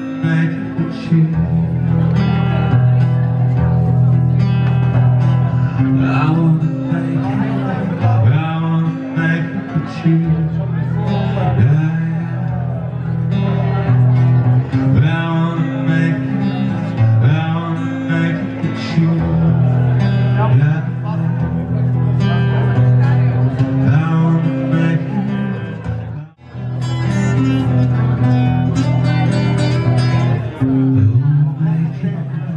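Live solo performance: a man singing with his own strummed acoustic guitar. The sound drops out for a split second about four seconds before the end, then the song carries on.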